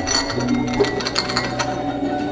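Quick, light clinking and clicking of china cups and saucers as tea is served, over a soft steady musical tone.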